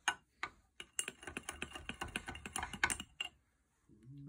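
Metal spoon clicking rapidly against a small glass jar while stirring baking soda into vinegar: a few light ticks, then about two seconds of quick clinks, roughly eight a second, stopping shortly before the end.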